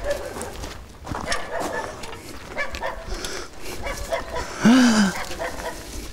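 A dog barks once, loudly, near the end, a single arched call over faint scattered rustling.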